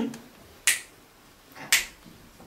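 Two sharp finger snaps about a second apart, picked up by a close microphone.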